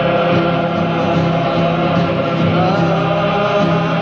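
Cape Malay men's choir singing a Dutch-language nederlandslied: the choir holds a sustained chord while a solo lead voice sings over it, gliding upward near the end.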